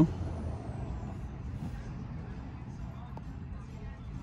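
Steady low background rumble with no clear source, with a faint high tone falling away in the first second and a single faint tick about three seconds in.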